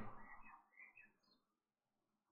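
Near silence: room tone, with a few faint high chirps in the first second or so.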